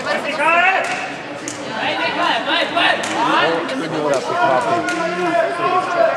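Voices talking in a large indoor hall, overlapping and echoing, with a few short knocks.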